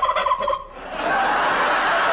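A turkey gobbling, with studio audience laughter swelling to a steady level about a second in.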